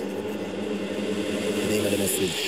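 Distorted synth tone from a 185 BPM hardcore electronic track, held steady on one pitch with a buzzing, engine-like timbre.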